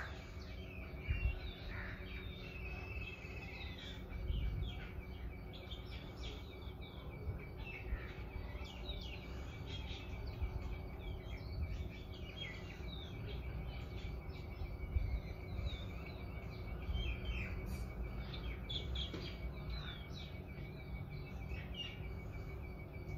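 Outdoor ambience: many small birds chirping in short, scattered calls throughout, over a thin steady high tone and a low, uneven rumble.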